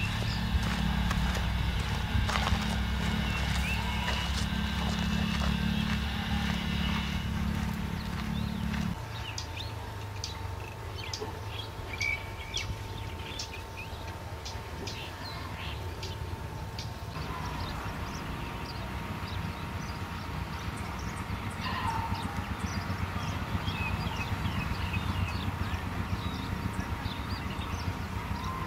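Outdoor location ambience: a low steady rumble for the first nine seconds, then lighter background sound with many short scattered clicks and a few brief chirps.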